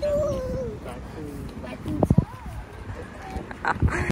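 A toddler's high, wavering whine for under a second at the start, followed by a few short vocal sounds.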